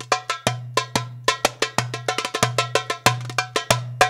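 Solo hand drumming with sharp, ringing strokes in a quick rhythm, about six strokes a second, crowding into a fast flurry around two seconds in.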